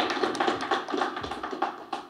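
A rapid, irregular run of light taps and clicks.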